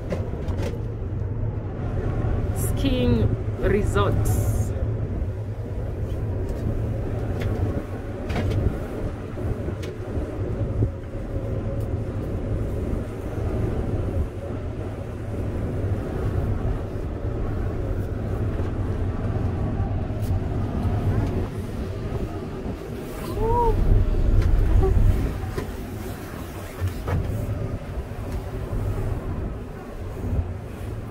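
Steady low rumble inside a moving cable-car cabin, with quiet voices of other passengers now and then. Near the end comes a louder, deeper rumble lasting a couple of seconds.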